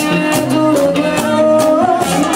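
Live band playing urban bachata: guitars, drum kit and percussion with a singer's voice over them, loud and steady.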